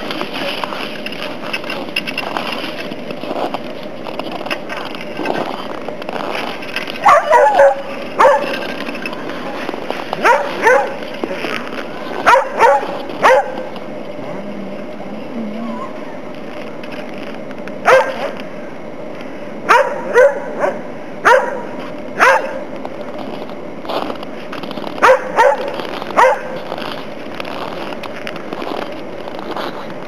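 Groenendael Belgian Shepherd dogs barking: about fifteen short, loud barks in small groups, starting about seven seconds in, over a steady background hiss.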